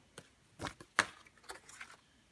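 Sheets of stationery and small items being handled in a wooden desk drawer: a few light taps and paper rustles, with one sharper click about a second in.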